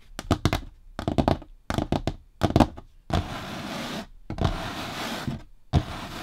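Long fingernails tapping on a tabletop in four quick clusters, then hands rubbing and scratching across the surface in three strokes of about a second each.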